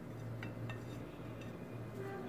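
Hands coating a chicken popsicle in breadcrumbs on a plate: three faint light clicks and taps in the first second and a half, over a steady low hum.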